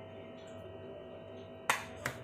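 Low steady room hum with one sharp, snap-like click near the end.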